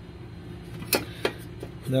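A sharp click about a second in, followed by a softer one, over a low steady hum.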